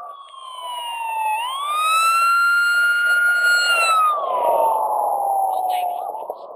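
A loud siren-like wailing tone. It slides down in pitch, swings back up and holds for about two seconds, then slides down again near the end, over a bed of road and wind noise.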